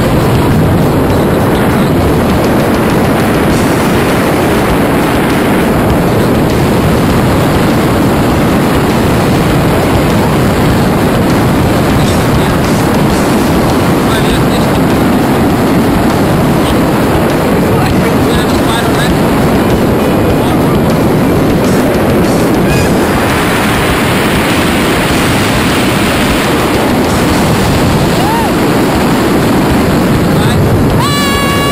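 Steady, loud wind rushing over a handheld camera's microphone during a tandem parachute descent under an open canopy, growing brighter and hissier for a few seconds near the end.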